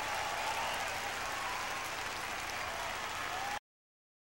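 Concert audience applauding at the end of a live show, the recording cutting off abruptly about three and a half seconds in.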